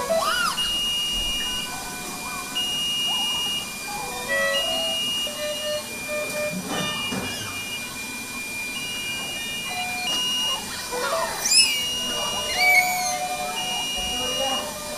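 Neonatal ward patient monitors and incubator alarms beeping: repeated electronic tones about a second long at several pitches, over a steady high tone. Near the end a newborn gives two short cries, the loudest sounds.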